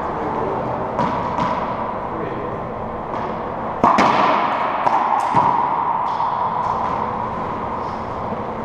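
A racquetball rally: sharp cracks of the ball off the racquet and the court walls, ringing in the enclosed court, the loudest pair about four seconds in, with a few more hits after.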